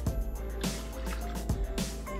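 Whisky poured from a small glass into a stainless steel Thermomix jug: a brief trickle and splash, heard under background music.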